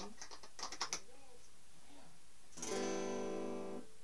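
A few sharp clicks from handling the electric guitar and its lead, then a single chord strummed on the electric guitar through the amp, about two and a half seconds in, ringing for a little over a second. It is a test strum while she chases a noise that she hopes is not a connection issue in the cable.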